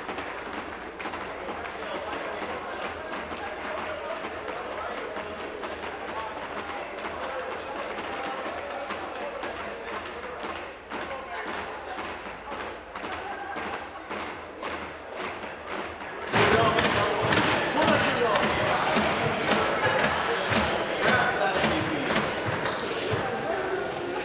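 Many people talking at once in a large legislative chamber, with scattered knocks and thuds. The chatter grows suddenly louder about two-thirds of the way through.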